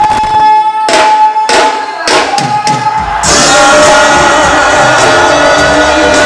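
Loud church praise music: a few sharp drum strikes under a held note, then the full band comes in about three seconds in.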